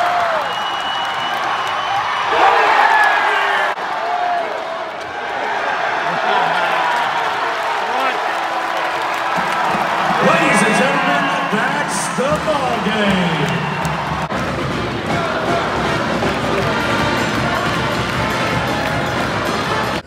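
Basketball arena crowd: many voices cheering and shouting over live game play. Music joins in about halfway through.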